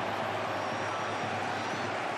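Steady crowd noise from the stands of a football stadium, an even background din with no single event standing out.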